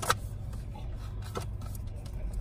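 Apple Watch packaging being handled and folded up, with a sharp click just after the start and a softer click about a second and a half in, over a steady low hum of a car's cabin.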